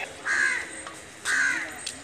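A crow cawing twice, about a second apart.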